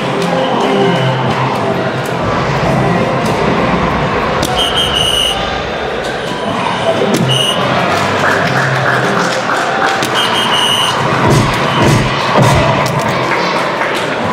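Soft-tip electronic dart machines in a large hall: darts knocking into the board, the machines' electronic music and short high beeps sounding several times, and a crowd murmur behind.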